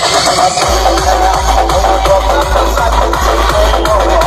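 Electronic dance music played loud through a large outdoor DJ sound system of stacked speakers. A heavy bass comes in under a second in, under a fast, steady beat.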